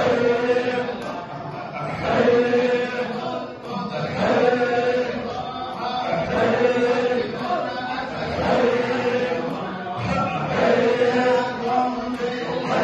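A group of men chanting Sufi dhikr in unison, one short phrase repeated over and over, each repetition swelling and falling about every two seconds.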